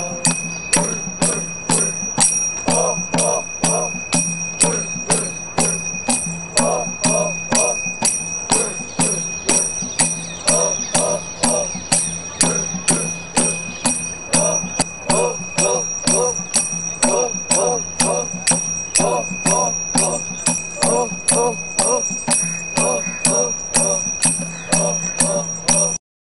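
Miji (Sajolang) folk dance music: voices chanting in short phrases over a steady metallic beat of about two strikes a second, with a bell-like ringing held throughout. It cuts off at the end.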